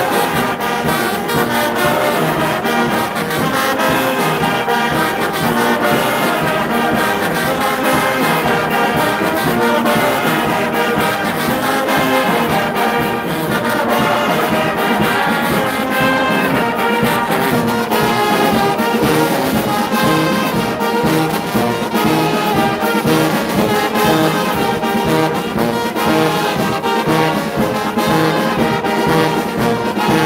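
Brass band playing a tune together, loud and without a break: sousaphones, trombones, baritone horns and trumpets.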